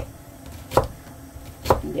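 Chef's knife chopping a halved onion against a cutting board: two sharp knocks about a second apart, the second louder.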